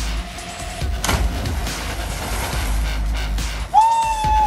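A body splashing into a swimming pool after a high jump about a second in, over background music; a long shout starts near the end.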